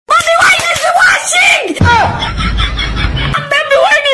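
A high-pitched voice shouting and screaming in exaggerated exclamations. About two seconds in, a deep rumble with the highs cut off takes over for a second and a half before the shouting voice returns.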